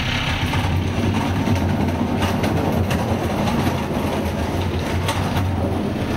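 Garbage truck's engine running steadily with a low hum while a wheelie bin is emptied into it, with a few faint clatters. The sound cuts off suddenly at the end.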